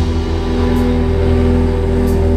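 Live indie rock band music: a sustained chord held steady, with no drums or singing.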